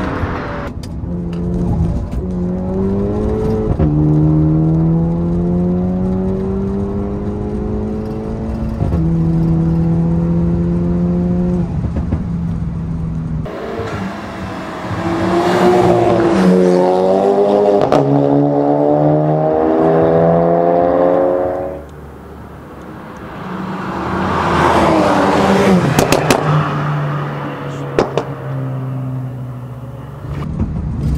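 Turbocharged car engines at full throttle in a drag race. First, a Volkswagen Jetta TSI's engine is heard from inside the cabin, its pitch climbing and dropping back at each upshift. About halfway through, the sound cuts to a Toyota Supra accelerating hard through the gears in the same way, with a car passing loudly near the end.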